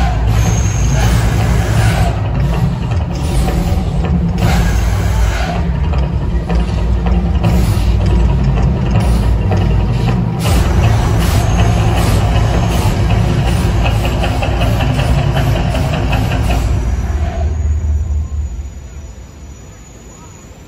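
Mirage volcano show: a loud, deep rumbling soundtrack over loudspeakers with a regular beat, mixed with surges from gas fireballs bursting over the lagoon. The rumble dies down sharply near the end as the show finishes.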